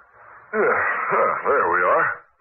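Speech: an actor's voice in a vintage radio drama recording, with the narrow, thin sound of an old broadcast.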